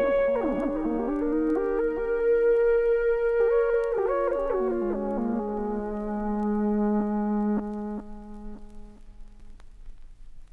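Electronic dance track's outro: synthesizer notes stepping up and down in pitch over a held tone, settling on one low held note, then dropping away and fading about eight seconds in.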